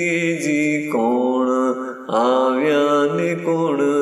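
Ginan, a devotional hymn, sung in a long wavering chant-like melody, drawn out in phrases of about a second or so each. A steady low tone holds beneath the voice.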